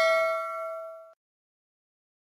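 Notification-bell chime sound effect of a subscribe-button animation, ringing out from a strike just before and fading away, stopping about a second in.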